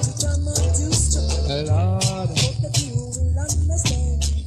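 Reggae dancehall music from a live sound-system recording: a deep, repeating bass line under crisp, regular percussion strikes, with a short melodic phrase about two seconds in.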